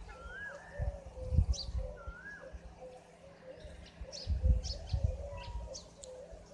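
Several birds calling: a rising-and-falling call twice, short high chirps scattered through, and a run of soft low notes beneath. A few low rumbles on the microphone stand out, the loudest about one and a half and four and a half seconds in.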